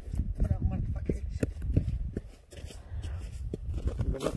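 Boots crunching on snow-covered lake ice as someone walks up: irregular crunches and clicks over a low rumble of wind on the microphone, with faint voices.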